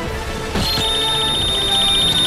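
Music, joined just under a second in by a high, rapidly pulsing electronic beep, an edited-in sound effect.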